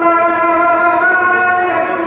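A man singing into a handheld microphone, holding one long, steady note.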